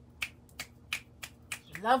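Five short, sharp clicks in an even rhythm, about three a second.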